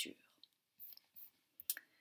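A few faint clicks from a laptop being operated, the sharpest near the end as a tab in the web app is clicked.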